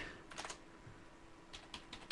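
Faint keystrokes on a computer keyboard, typed one-handed: a short run of taps about half a second in and another near the end.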